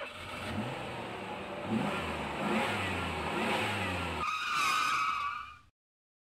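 Vehicle engine sound effect for the outro, revving and accelerating through several rising pitch sweeps, then a sustained horn-like blast about four seconds in that stops abruptly.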